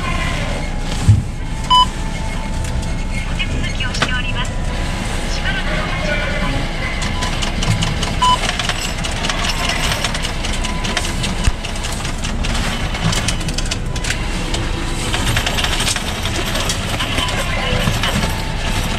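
Bank ATM beeping short electronic tones as its touchscreen keys are pressed, about a second in, again near two seconds and once more around eight seconds, over a steady background rumble while it processes a coin deposit.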